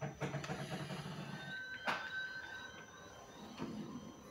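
Sound from a television's speakers picked up in the room: a low drone for the first second and a half, then a sharp knock about two seconds in with a short high tone.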